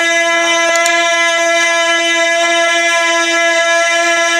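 A man's voice holding one long, unwavering note through a microphone and PA in naat recitation, loud and without a break.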